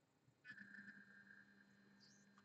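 Near silence, with a faint steady hum from about half a second in.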